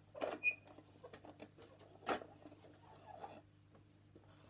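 Plastic teaching clock handled close to the microphone: light clicks and rattles as its hands are turned to a new time, with a brief squeak about half a second in.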